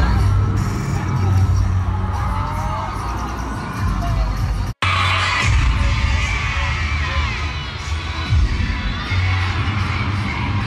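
Cheer routine music with heavy bass played loud over arena speakers, with an audience screaming and cheering over it. The sound cuts out for an instant about halfway through.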